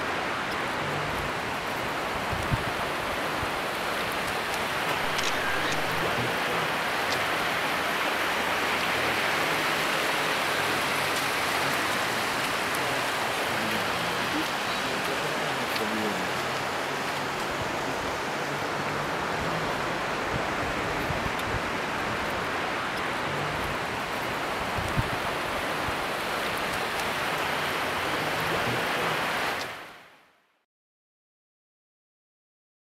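Steady rushing of a river over rocks, a constant even hiss, with faint voices under it; it fades out at the very end.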